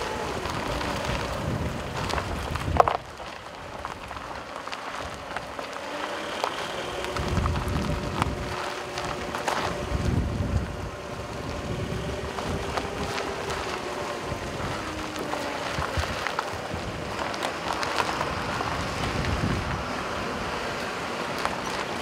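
A car rolling over a rough, broken gravel road: tyre crunch and rumble from the loose surface, with wind on the microphone and a sharp knock about three seconds in.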